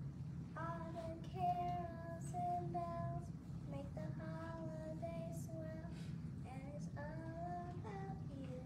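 A child's voice singing a slow tune in long held notes, three phrases, fairly faint, over a steady low hum.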